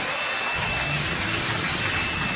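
Audience applauding after a punchline, with a long high whistle over the clapping in the first half.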